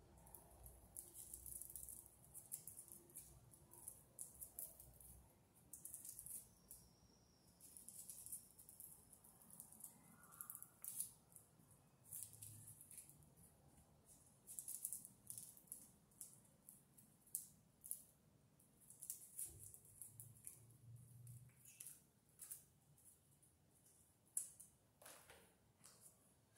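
Faint, irregular crisp clicks and scrapes of a hand tool stripping the insulation off electrical cable, with the cable rustling as it is handled.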